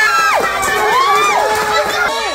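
Several women and children shrieking with laughter and cheering, their high-pitched cries long, overlapping and sliding up and down in pitch.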